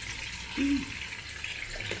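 Chicken strips deep-frying in a pot of hot oil: a steady, busy bubbling sizzle. A short vocal sound comes briefly about half a second in.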